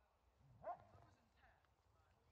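Near silence: quiet woodland background with one faint, brief distant call about two-thirds of a second in.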